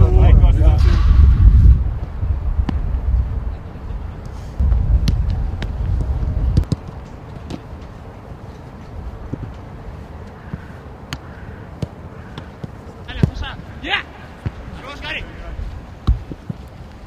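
Footballs being kicked during outdoor team training: sharp thuds at irregular intervals, with wind buffeting the microphone at times and short distant shouts near the end.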